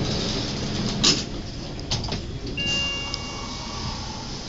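Schindler elevator doors sliding shut, closing with a knock about a second in, then a single electronic chime ringing a little over a second as the car leaves: the floor-passing chime.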